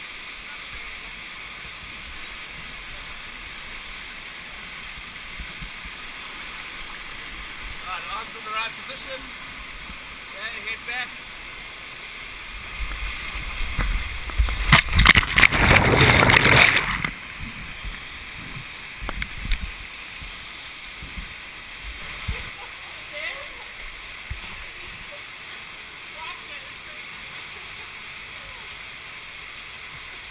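Steady rush of canyon water, with a loud churning surge of water about midway as the camera goes under and comes back up, then the steady rush again.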